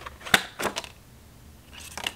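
Tarot cards being handled as a card is drawn from a fanned deck: two sharp snaps of card stock close together, then a soft rustle of cards near the end.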